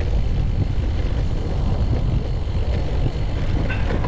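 Wind rushing over an action camera's microphone while cycling: a steady low rumble.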